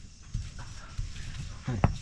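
A hand-held grinding stone (lohoro) rocked and knocked against a flat stone slab (silauto) while grinding spices: a few dull stone-on-stone knocks, with a sharper clack near the end.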